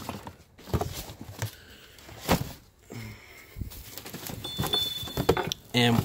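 Hands rummaging through cardboard boxes of plastic bottles: scattered knocks, clatter and rustling of cardboard and plastic, with one sharper knock a little past two seconds in.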